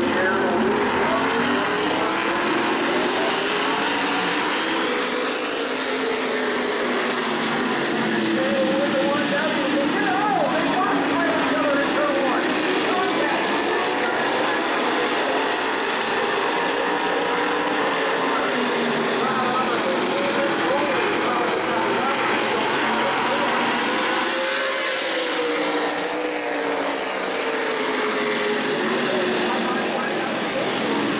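A field of racing stock cars running hard on an oval. The engine pitch rises and falls again and again as the cars lift and power through the turns and down the straights.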